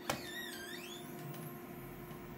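UV flatbed printer: steady machine hum, a sharp click just after the start, then a short motor whine that dips and rises in pitch for about a second.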